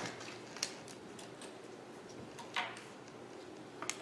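Quiet room with a few faint clicks and one short rustle as small items are handled on a wooden pulpit.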